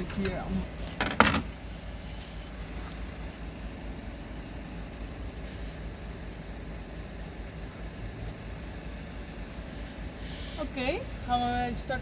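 A single sharp clank about a second in, from hand work in a car's engine bay, over a steady low background hum.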